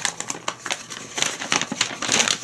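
A folded paper instruction leaflet rustling and crinkling in the hands as it is opened out, a run of irregular crackles.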